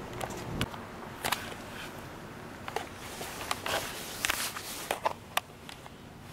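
Handling noise: scattered clicks and short rustles as the camera is moved about, with a low hum that cuts off about half a second in. No engine or aircraft sound is heard from the lights in the sky.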